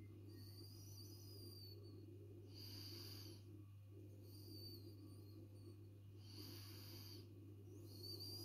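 Near silence: a faint steady low electrical hum, with soft breaths close to the microphone about every two seconds.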